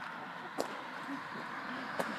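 A car approaching along the road, heard faintly as a steady rush of tyre and engine noise. A single sharp click comes about half a second in.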